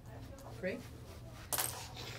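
A short, sharp clink of a small hard object hitting a hard surface, about one and a half seconds in, after a single spoken word.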